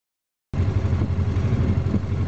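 Polaris RZR 900 side-by-side's engine idling with a steady low rumble, starting about half a second in.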